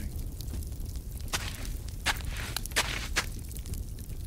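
Footsteps sound effect for a radio play: a handful of slow, uneven steps over a low steady hum.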